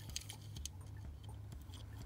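Faint scattered clicks and rubbing of fingers handling a small toy car as it is turned over, over a low steady hum.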